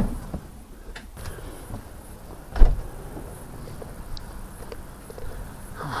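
A door banging shut with one loud thump about two and a half seconds in, after a lighter click about a second in.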